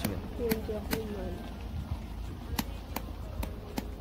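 Hammer strikes on a tent peg being driven into the ground: sharp knocks, a few in the first second and then a steady run about every half second in the second half.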